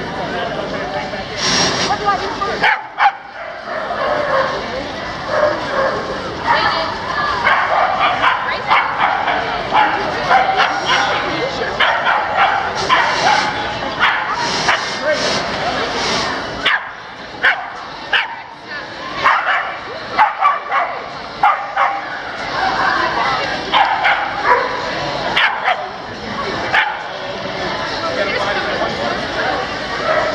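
Dogs barking in many short, sharp barks scattered throughout, over the chatter of a crowd.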